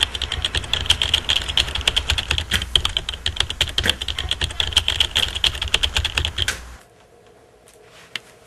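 Rapid computer keyboard typing, a dense run of clicks, cutting off suddenly near the end.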